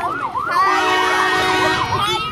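Emergency vehicle siren in a fast rising-and-falling yelp, with a steady horn blast sounding over it for about a second in the middle.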